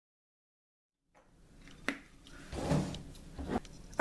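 Dead silence for about a second, then faint room sound with a few small clicks and knocks.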